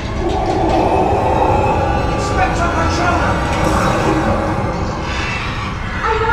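Hogwarts Express ride car running with a steady low rumble, under a sustained eerie sound effect from the compartment's show soundtrack as the windows frost over.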